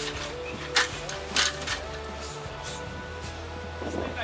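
Background music with sustained low tones that change pitch, with three short sharp noises in the first second and a half.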